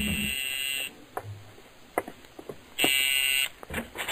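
Apartment door buzzer sounding twice: a buzz of about a second, then a second shorter buzz about three seconds in, with a few light clicks between them. It signals a caller at the door.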